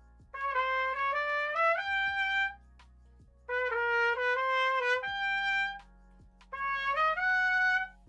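Solo trumpet playing the same high etude passage three times in a changed, dotted rhythm. Each short phrase climbs in steps to a held higher note, with a brief gap between phrases.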